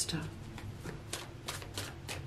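Tarot cards being handled and drawn from the deck: several short, faint swishes of cards sliding.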